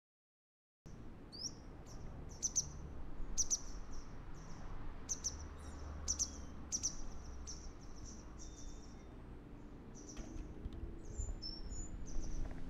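Silence for under a second, then small birds chirping: short high calls repeating irregularly, one or two a second, over a low steady rumble.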